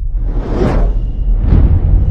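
Channel logo sting: two swelling whooshes, the second louder, about a second in and near the end, over a deep steady bass rumble, with a faint thin high tone entering partway through.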